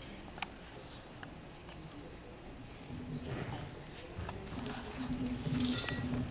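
Auditorium room sound without music: a few soft clicks and rustles, then low, faint voices murmuring in the second half.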